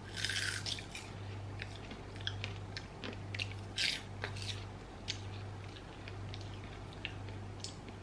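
Chewing a homemade oven-baked kale crisp that has come out burnt: a run of small dry crackles, loudest at the first bite and twice more around the middle.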